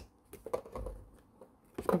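Jewellery wire being wound by hand around a twisted-wire frame: a few faint scratchy ticks and small clicks of wire and fingertips in the first second, then quieter handling.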